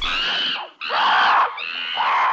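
High-pitched screaming in two long cries with a brief break just before a second in, followed by a third, softer cry.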